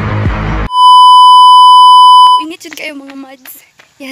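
Background music cuts off under a second in and gives way to a very loud, steady electronic beep tone, which lasts about a second and a half and stops abruptly. A voice follows near the end.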